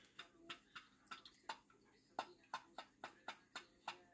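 Faint, irregular ticking from a KTM 690 fuel pump test rig: the pump is running dead-headed into a pressure gauge, about three to four clicks a second and steadier towards the end. The pump builds pressure slowly and stalls around 4.2 bar, which the mechanic takes for a weak pump with unsteady output that needs replacing.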